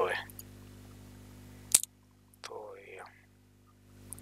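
A single sharp computer mouse click a little under two seconds in, followed by a short murmured voice sound.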